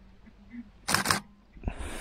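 Camera shutter firing, a quick double click about a second in, followed by a softer thump and rustle near the end.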